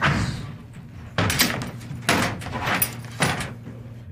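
A heavy door banging at the start, then four loud, short knocks at uneven intervals over a low steady hum.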